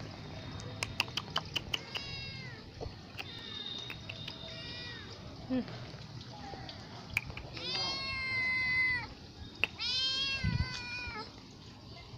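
A small cat meowing repeatedly, about four meows, the two in the second half longer and louder than the first two, which the uploader takes for begging for food. Short irregular clicks sound between the calls.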